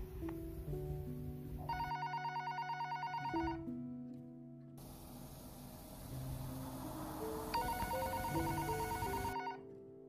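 A telephone ringing twice, each ring a rapid electronic trill lasting just under two seconds, over slow background music with long held notes.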